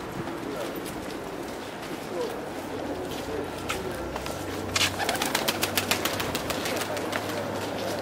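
A feral pigeon on a pavement, its wings flapping in a quick run of sharp claps from about five seconds in, over steady street noise.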